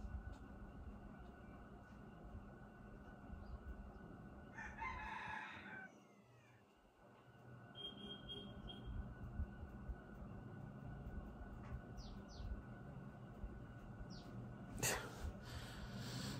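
Faint room tone with a distant bird call, about a second long, a third of the way in.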